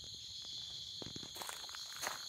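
A steady high-pitched chorus of crickets, with a few footsteps on a paved road in the second half.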